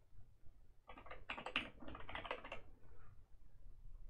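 Computer keyboard typing: a quick burst of keystrokes starting about a second in and lasting just under two seconds.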